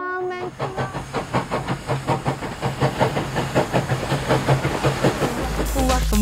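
Steam train chuffing in a steady rhythm of about five chuffs a second, with a hiss beneath. A deep rumble comes in near the end.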